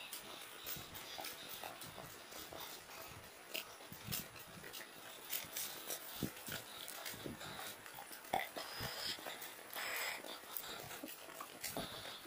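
Footsteps and rustling on a dirt forest trail while walking: faint, irregular crunches and clicks, with a couple of brief louder rustles later on.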